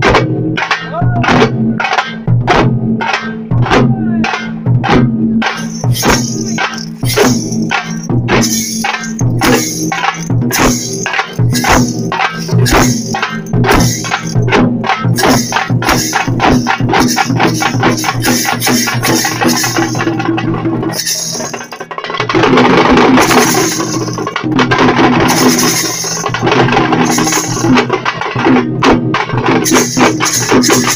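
Parai (thappattam) frame drums beaten in unison with sticks by a troupe. The strokes start at about two a second and quicken steadily. After a brief dip about two-thirds through, they break into a fast, dense roll, then return to a beat.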